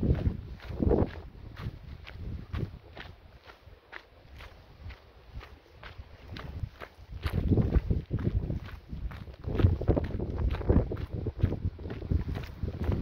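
Footsteps of a hiker walking along a dirt and gravel trail, a steady crunching stride of about two steps a second.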